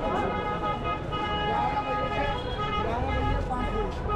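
Busy market-street ambience: many people talking at once over traffic noise, with a steady pitched tone running through it.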